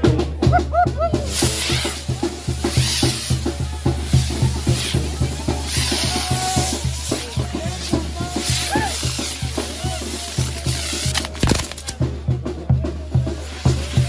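A Mexican banda playing, its tuba and drums keeping a steady beat, over the hissing crackle of a hand-carried frame of fireworks spraying sparks. One sharp crack late on.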